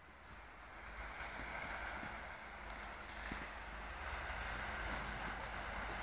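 Faint steady rush of wind on the microphone, with a low rumble underneath, coming in about half a second in.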